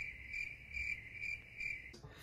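Cricket chirping sound effect: a steady high trill that pulses about two or three times a second and cuts off near the end. It is the familiar 'crickets' cue for an awkward silence.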